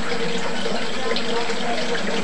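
Pellet stove running: its blower fans make a steady rushing noise with a low hum under it.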